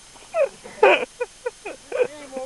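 Laughter: short, high-pitched bursts, one about half a second in and a louder one near the middle, then a quick run of short bursts to the end.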